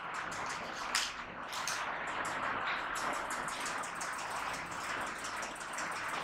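Steady room hiss with scattered faint clicks and rustles, and one sharper click about a second in.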